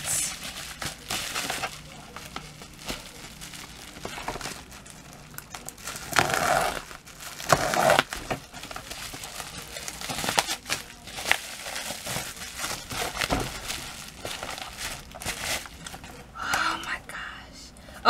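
Plastic bubble wrap crinkling and rustling in irregular bursts as it is pulled off and unwrapped from a makeup palette, louder around six and eight seconds in.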